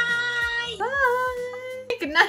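A high female voice singing two long held notes, each sliding up into the note. The second note wavers slightly and cuts off suddenly near the end.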